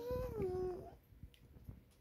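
A pet's single drawn-out whining call, falling in pitch and fading out about a second in, begging for a bite of the cake.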